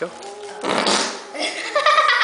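A rubber whoopee cushion squeezed by hand, giving a loud raspy fart noise for under a second, followed by a child laughing.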